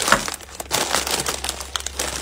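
Plastic chip bags crinkling as they are picked up and shuffled about on a desk, a dense run of sharp crackles.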